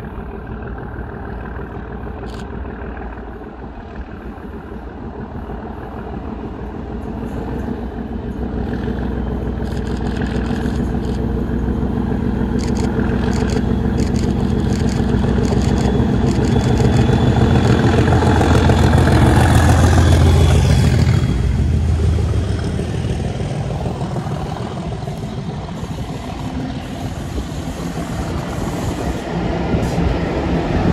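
Class 37 diesel locomotive with an English Electric V12 engine approaching and passing close beneath, its engine and wheel noise growing steadily to a peak about two-thirds of the way through, then falling away as it moves off. The sound swells again near the end as the rest of the train passes.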